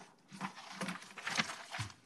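A few irregular clicks and taps, about four in two seconds.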